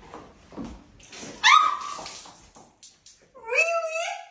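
A young woman's sharp shriek about one and a half seconds in, then a second cry that rises in pitch near the end.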